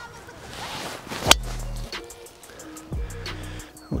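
Driver striking a golf ball off the tee: one sharp crack about a second in, over background music.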